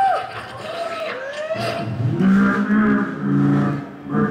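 A beatboxer making vocal sound effects into a microphone, heard over PA speakers: quick rising and falling whistle-like swoops, then a held buzzing drone from about halfway through.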